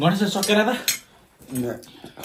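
Forks clinking against plates while people eat noodles, with a person's voice loud in the first second and a shorter, lower voice about one and a half seconds in.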